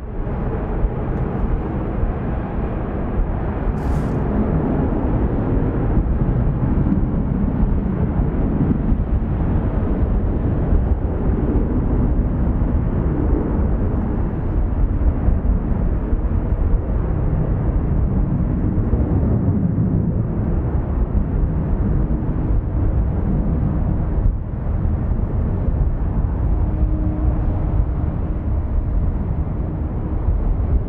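Steady, even rumble of jet aircraft engine noise across an airport apron, with a faint steady hum joining in the last third.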